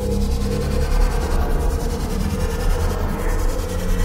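Dark, droning film soundtrack: a steady low rumble and hum under a hissing, grainy texture, with no clear melody.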